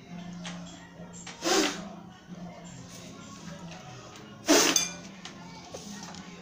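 Two sharp puffs of breath blown across a tabletop at a small coin, about a second and a half in and again near four and a half seconds, the second followed by a brief metallic clink. A steady low hum runs underneath.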